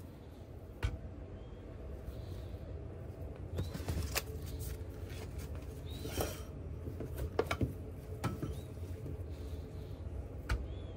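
Raw beef patties being handled and stacked on a stainless-steel counter: a few light taps, clicks and soft slaps scattered over a steady low hum.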